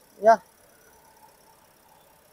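A man's single short spoken word, then quiet background with a faint steady hum.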